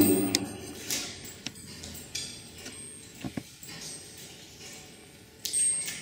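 Faint clinks and light knocks from the iron chain and hooks of a large steelyard scale as it is handled, with one sharper click about halfway and a brief rustle near the end.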